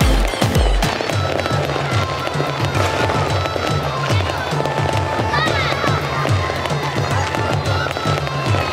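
Background music with a steady, repeating bass line, over many sharp cracks and pops of fireworks bursting overhead.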